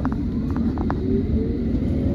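London Underground train running through a station, heard from inside the carriage: a loud, steady rumble with a faint rising whine and a few sharp clicks.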